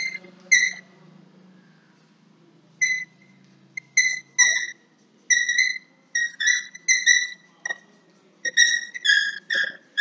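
Chalk squeaking against a chalkboard in a run of short, high-pitched squeals, one with each stroke of handwriting. There is a pause of about two seconds near the start, then the strokes come quickly and keep on.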